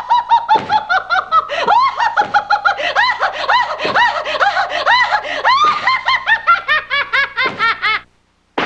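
A woman's high-pitched laughter, a long unbroken run of quick, short peals that cuts off suddenly at the very end.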